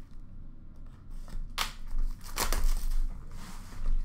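Trading-card packaging being handled: short crinkling, rustling noises, the loudest about one and a half and two and a half seconds in, with a softer rustle shortly before the end.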